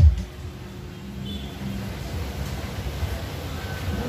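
Electronic music through a PA system drops, after one beat at the very start, to a quieter passage with no beat: a low, rumbling bass with little else above it.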